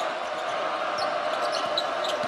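Steady arena crowd noise from a college basketball game broadcast, with the sounds of play on the hardwood court: ball bouncing and a few short, high shoe squeaks.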